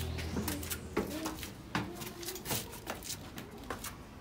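Footsteps on a stone floor, about one step every three-quarters of a second, in a stone-walled passage, with short low cooing calls between the steps.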